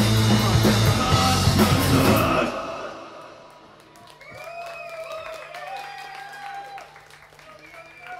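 Live rock band of electric guitar, bass and drum kit playing loudly, the song ending about two and a half seconds in. A low steady hum is left, and voices call out for a few seconds after.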